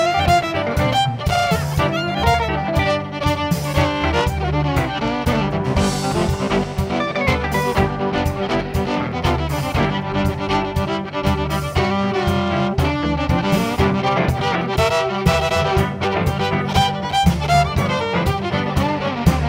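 Live western swing band playing an instrumental passage, the fiddle carrying the melody over electric guitar, keyboard and drums with a steady beat.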